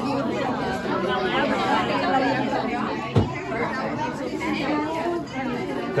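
Many children and adults chattering at once, voices overlapping, with one sharp knock about three seconds in.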